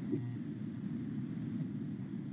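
Steady low background rumble and hiss of an open microphone on a video call.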